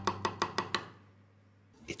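Knife chopping quickly on a wooden cutting board, about eight even strokes a second, fading out within the first second over faint background music.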